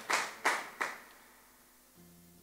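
The last few hand claps of a small audience's applause, three or four separate claps that thin out and die away about a second in.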